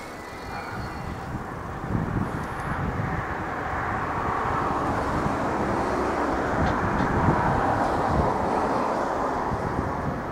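Electric train running through a rail yard: a steady rumbling noise that builds over the first several seconds, peaks about seven seconds in, and eases slightly near the end.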